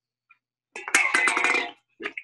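Chef's knife dicing red bell pepper on a wooden cutting board: a quick run of chops, about a second long, starting partway in, heard through the clipped, gated audio of a video call.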